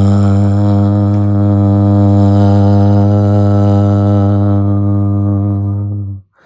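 A man's deep voice toning one long, steady low note on the syllable "ga" as a sound-healing chant, rich in overtones.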